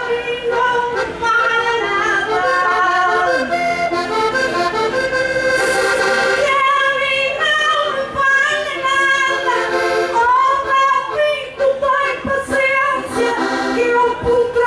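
Diatonic button accordion playing a continuous folk melody of held notes, an instrumental passage between the sung verses of a desgarrada.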